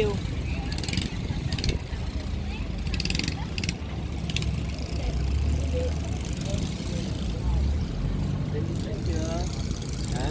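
Boat engine running steadily with a low rumble, a few short rattles about one, three and four seconds in.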